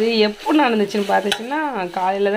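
A voice with held, gliding notes, like singing, over a metal spoon stirring thick curry in a stainless steel saucepan, with one sharp clink of the spoon on the pot about a second in.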